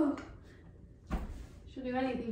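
A woman's voice trails off on a falling, high-pitched tone, then there is a lull broken by a single knock about a second in, and her speech starts again near the end.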